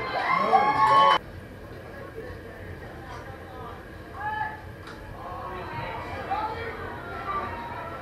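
A man's commentary voice for about the first second, cut off abruptly. It leaves faint, distant voices of spectators and players chattering around a baseball field.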